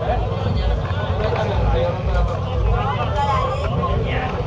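Voices of several people at once, talking or praying, over a steady low rumble.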